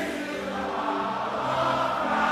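Congregation and choir singing a worship hymn over steady musical accompaniment, holding sustained notes between lines.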